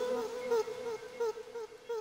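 Future garage electronic music thinning out: a short pitched note repeats about three times a second as a fading echo, growing quieter.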